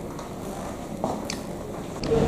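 Room noise with a few faint short clicks and rustles.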